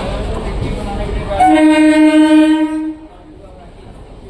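Passenger train approaching along a station platform: a low rumble, then one steady horn blast about a second and a half in, lasting about a second and a half. After the blast the sound drops away.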